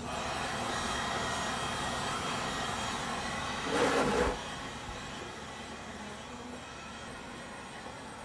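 Handheld electric heat gun blowing steadily on a plastic sheet, a constant fan-and-air noise that swells briefly about four seconds in, then settles a little quieter.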